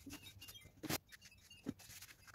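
A cloth rag and gloved hand rub dark stain into a wooden picture frame, giving short high squeaks. There are two knocks as the frame is handled, the louder one about a second in.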